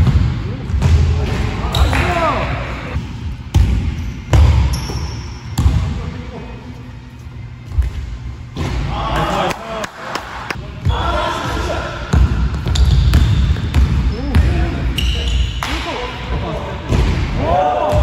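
A basketball dribbled on a hardwood gym floor, with repeated low bounces, players' running footsteps and short sneaker squeaks that come several times, loudest about two seconds in, around nine and eleven seconds, and near the end.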